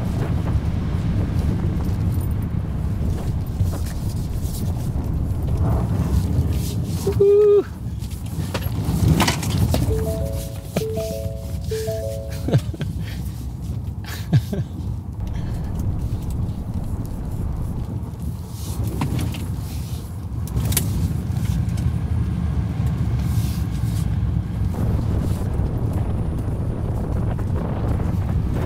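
Ford F-150 Lightning electric pickup sliding through a dirt rally course with traction control off: a steady rumble of tyres on loose dirt and gravel. About ten seconds in, a short electronic chime sounds three times.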